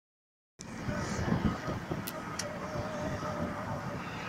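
Car driving along a road, heard from inside the moving car: a steady low engine and tyre rumble that starts about half a second in, with two light clicks about two seconds in and a faint steady whine near the end.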